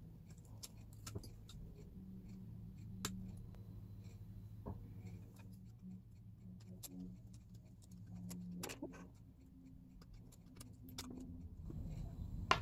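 Faint, irregular snips and clicks of small hand shears cutting shapes from thin copper and brass sheet, over a low steady hum.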